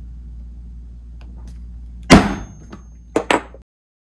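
A mallet striking a leather hole punch once, loud and sharp, about two seconds in, followed by two quick lighter knocks, over a low steady hum.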